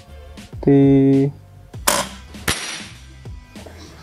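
DP Fusion 2 Mini gejluk air rifle firing a 4.5 mm pellet after a single pump stroke: one sharp report about two seconds in. About half a second later comes a second sharp crack with a brief hiss of noise, the pellet striking the glass bottle target.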